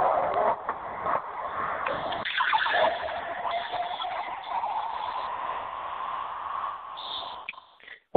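Liquid pouring: soda pop being poured into a glass, a steady rushing splash that fades out near the end.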